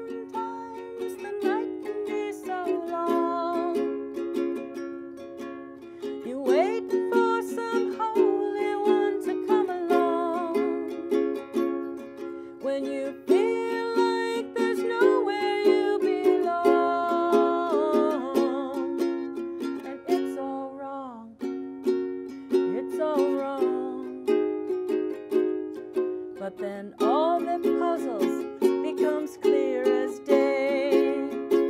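A woman singing with long held notes while strumming a ukulele, the strummed chords running steadily under her voice.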